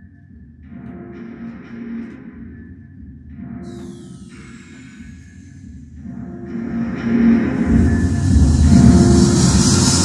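Music played through Cerwin Vega SL12 floor speakers driven by a Denon AVR-X4700H receiver, with the receiver's sound settings still flat. It opens quiet and sparse, with a falling sweep about four seconds in, then builds and grows much louder from about seven seconds on.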